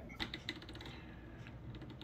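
A run of faint, quick light clicks that die away a little past the middle.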